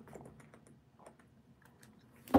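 Near silence with faint scattered clicks from a thin plastic water bottle being drunk from and handled.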